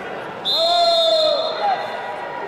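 A long shouted call, about a second long, starting half a second in, together with a steady high-pitched whistle that starts with it and holds.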